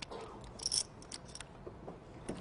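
Faint clicking of poker chips being handled at the table: a short cluster of clicks about two-thirds of a second in and a couple more just after a second, over low room noise.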